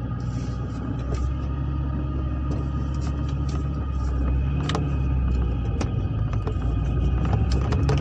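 Car engine and road drone heard from inside the cabin while driving, a steady low hum that grows slightly about a second in, with a few light clicks and rattles.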